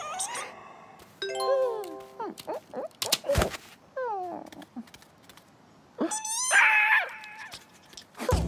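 Cartoon creature voice effects: a string of short squeaky calls that slide up and down in pitch, a thud a little over three seconds in, and a loud wavering squawk about six seconds in.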